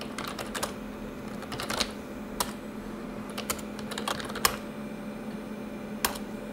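Typing on an SGI computer keyboard: irregular key clicks, a few a second, over a steady low hum.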